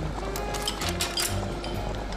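Background music, with a few light clicks in its first half.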